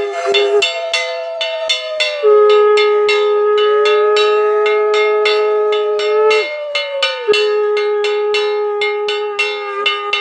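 Two conch shells (shankha) blown in long overlapping notes, each swelling in and sagging in pitch as the breath runs out, over fast steady strikes on a ringing metal bell, several a second, as in a Bengali puja ritual.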